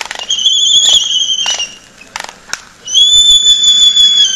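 Laysan albatrosses in a courtship dance: sharp bill clacks, and two long, high whistled calls, the first wavering at its start and trailing off before two seconds, the second starting about three seconds in and held steady.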